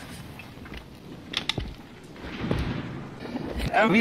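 Quiet background ambience with a few short knocks or creaks around the middle. A man's voice starts near the end.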